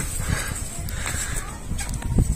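Faint footsteps on paving, with a low, uneven rumble of wind on the microphone.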